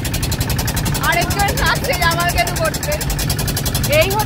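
A motorboat's engine running steadily under way, a low drone with a fast, even pulse, with people's voices over it for a second or so.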